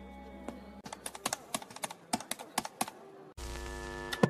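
Payphone keypad buttons pressed in a quick, irregular run of sharp clicks. Near the end a steady electronic tone with static hiss comes in.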